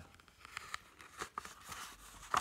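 Faint rustling of a picture book's paper pages being handled, with a few small clicks and ticks, as a page is taken hold of to be turned.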